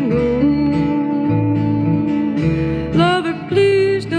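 Instrumental break in a slow blues-style folk song: acoustic guitar accompaniment under a lead line that holds long notes and bends up in pitch, with a cluster of bends about three seconds in.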